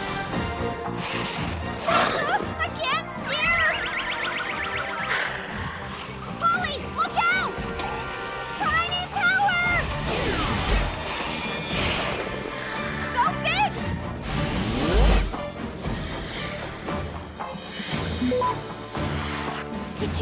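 Animated-cartoon soundtrack: dramatic music with short cries and exclamations and crash sound effects as a snowboarder wipes out, including two heavy low thuds about 11 and 15 seconds in.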